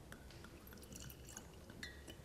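Near silence with faint small clicks of glassware being handled, and a brief light clink of a wine glass near the end.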